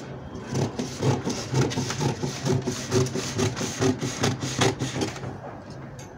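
Scissors cutting through pattern paper, a steady run of snips about two a second that fades about five seconds in.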